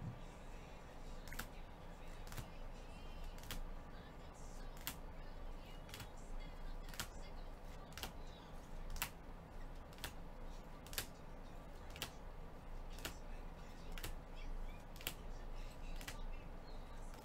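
Rigid plastic toploader card holders clicking as the trading cards in a stack are flipped through one by one, about one sharp click a second, over a faint steady hum.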